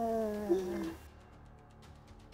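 A woman's long, wordless, drawn-out voice during an embrace, slowly falling in pitch and stopping about a second in.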